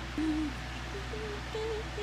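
A woman softly humming a few short notes with her mouth closed, wavering and stepping up in pitch.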